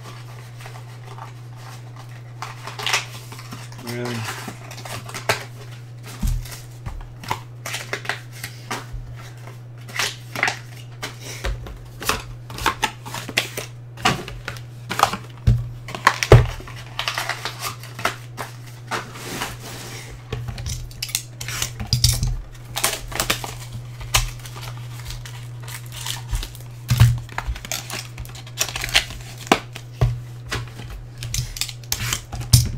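Sealed cardboard trading-card hobby boxes being handled and set down on a table: irregular taps, clicks and knocks, over a steady low electrical hum.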